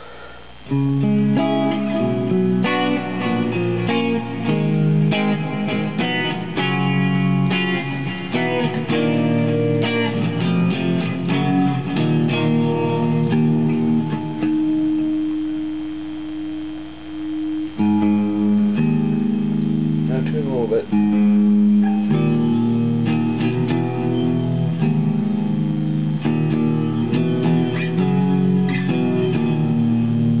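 Fender Lone Star Stratocaster electric guitar played through an amplifier on a clean channel: a run of picked notes and chords, with one note left ringing about halfway before the playing picks up again.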